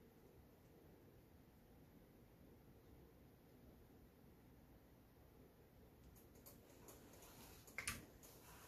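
Near silence: room tone, with a few faint clicks near the end.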